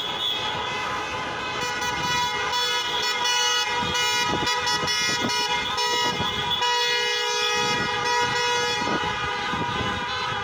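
Several car horns honking at once, held long and overlapping into a steady chord of tones: a protest car caravan honking along the street.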